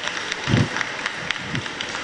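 Scattered light clapping from a few people, irregular single claps about five or six a second, with a couple of short low murmurs.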